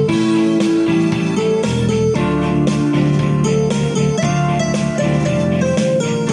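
Instrumental music with no singing: plucked guitars play a melody of notes changing every half second or so over chords.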